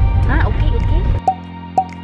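Low road rumble inside a moving car with a brief voice sound, cut off abruptly a little over a second in. Quiet music follows: a steady backing with plinking, water-drop-like notes that each fall in pitch, about two a second.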